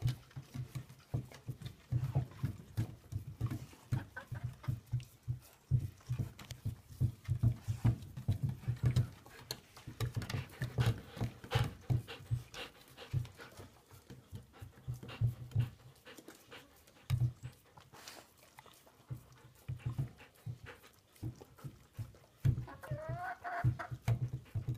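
Dogs licking and gnawing at blocks of ice frozen with dog biscuit and mixed vegetables: a rapid, uneven run of licks, crunches and teeth clicking on ice. A short pitched call rises and falls near the end.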